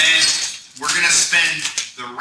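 Indistinct talking: voices that the recogniser did not catch as words, with a short pause about three-quarters of a second in.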